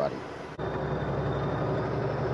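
Steady low rumble of a vehicle cabin on the move, road and engine noise with a faint hum. It cuts in suddenly about half a second in, where the recording was paused and resumed.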